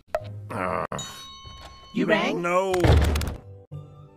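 Animated-film soundtrack: a sharp knock just before a second in, then a bell-like ringing tone for about a second, then a voice sliding up and down in pitch, with music underneath.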